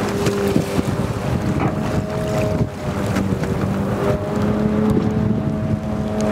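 A boat engine running with a steady drone, under wind buffeting the microphone and the wash of a choppy sea.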